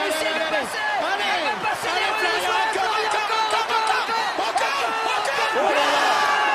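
Excited television sports commentary over a stadium crowd cheering.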